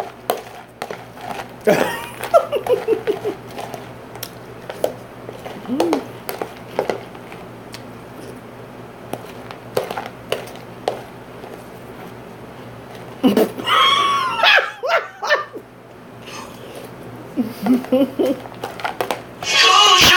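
Close-up eating sounds: crunchy cereal being chewed and a metal spoon clicking and scraping in a plastic container. Short pitched voice-like sounds break in now and then, the longest about 13 to 15 seconds in.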